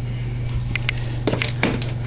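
A few light clicks and knocks from a white plastic bubbler bottle being handled, over a steady low hum.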